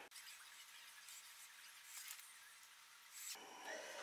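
Near silence: faint room hiss, with a soft rustle of knit fabric being handled in the last second or so.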